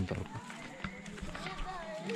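Faint, distant voices of other people, with a few footsteps on a dirt path.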